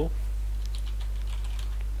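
Computer keyboard being typed on: a run of faint key clicks as a word is entered, over a steady low hum.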